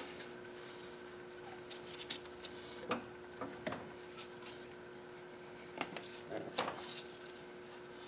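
Faint handling noises as an aluminum coolant T is worked into rubber coolant hoses: a few light knocks and rubs, the clearest about halfway through, over a steady faint hum.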